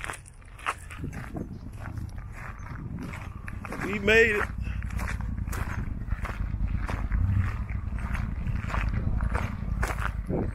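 Wind rumbling on the microphone, with light ticks and steps throughout. About four seconds in comes one short, wavering high call from a voice, the loudest sound.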